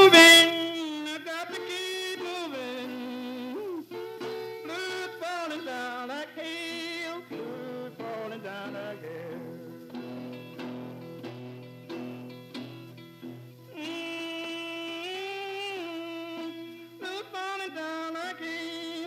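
Acoustic guitar playing with a voice singing over it, a loud held sung note at the start and then the song carrying on at a steadier level.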